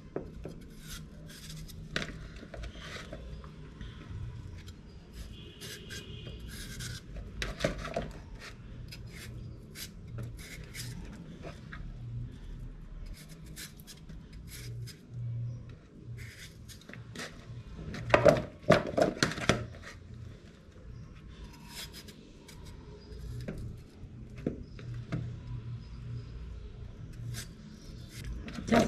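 Kitchen knife cutting raw potatoes into chips by hand: a run of short, irregular cuts and clicks as the blade goes through the potato and strips drop into a plastic tub, with a louder cluster of knocks about two-thirds of the way through.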